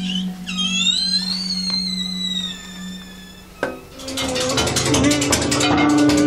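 Free-improvised jazz. A high note slides up and then sinks slowly over a low held note. After a sharp hit a little past halfway, drums with cymbals and a steady low note come in.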